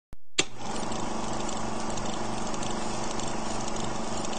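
A steady buzzing noise with a low hum beneath it, switching on with a click just after the start and running unchanged.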